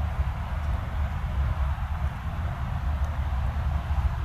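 Arriva Stadler passenger train approaching on the track, heard as a steady low rumble.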